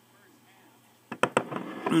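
Two sharp knocks about a second in, then a man clears his throat at the very end, the loudest sound.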